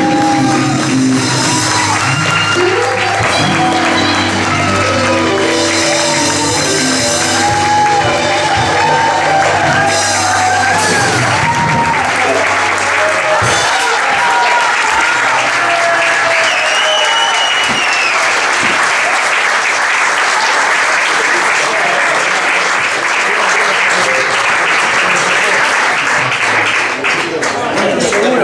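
A live jazz band's closing bars, held notes over a bass line, with an audience cheering and shouting over them. About halfway through the music stops and steady applause with shouts fills the rest.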